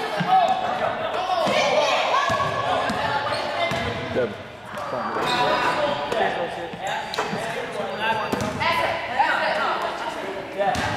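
Basketballs bouncing on a hardwood gym floor, a scattering of sharp thuds, among the overlapping chatter of boys' voices, echoing in a large gym.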